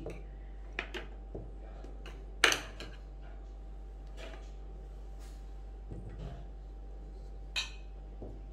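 Small ceramic bowls knocking and clinking as they are picked up and set down, a few scattered knocks, the loudest about two and a half seconds in and another near the end.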